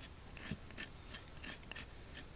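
A hoof pick's looped blade scraping mud from a horse's hoof sole: several faint, short scrapes.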